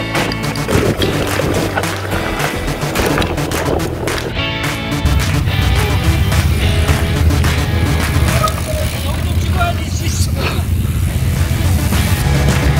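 Background music with a steady beat; a heavy bass line comes in about five seconds in.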